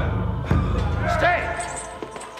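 A large drum struck slowly with a stick, deep beats a little under a second apart, with one beat about half a second in; voices sound over it, and the low drum rumble dies away near the end.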